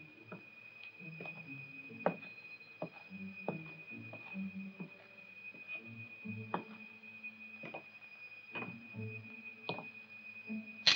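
Quiet soundtrack under a wordless stretch of film: a faint steady high whine throughout, with scattered soft clicks and knocks at uneven intervals and a few short low tones.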